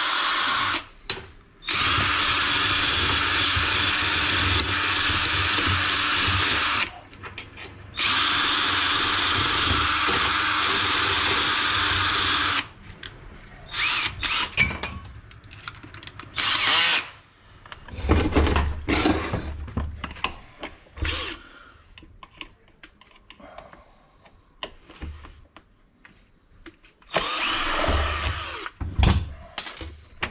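Datsu backpack brush cutter's small two-stroke engine running hard at a steady pitch, dropping back twice for a moment, then cut off about twelve seconds in. It cannot reach high revs; its exhaust is half-blocked with carbon. After it stops come irregular knocks and clatter of the machine being handled.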